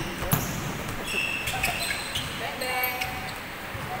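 A basketball dribbled and bouncing on a hardwood gym floor, with a sharp bounce about a third of a second in, while sneakers squeak in short, high chirps on the court as players cut and defend. Players' voices are mixed in.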